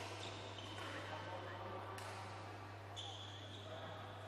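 Badminton racket strikes on a shuttlecock, two sharp hits about a second apart midway through, echoing in a large sports hall.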